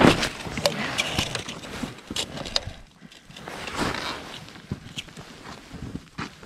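Snow crunching and scuffing under boots and knees beside an ice-fishing hole, in irregular crunches and scrapes, with some handling of the tip-up.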